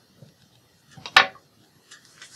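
A single sharp click of a hard object, a little over a second in, amid faint handling of paper and craft tools on the work table.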